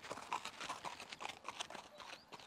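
Soft, irregular hoofbeats of a Chilean horse walking on a packed dirt and gravel road, led on foot through a figure-eight turn for a gait check.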